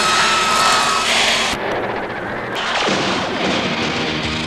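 A loud, steady roar of noise, with a held high tone in the first second; pitched band sounds start to come through near the end.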